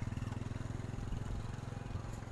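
A small motorcycle engine running steadily at low revs, with a fast, even pulsing.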